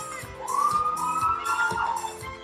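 Performance music with a steady beat, over which a loud high tone slides upward about half a second in, holds for over a second, and breaks off near the end.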